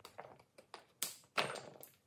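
Hand-stitching thick leather: needle and thread pulled through the stitching holes, with pliers gripping the needle, making a run of about six short scratchy pulls and clicks, the loudest about a second in.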